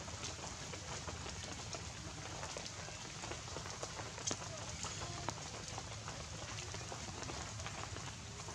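Steady outdoor background noise, a hiss with scattered small clicks and ticks, the sharpest about four and five seconds in.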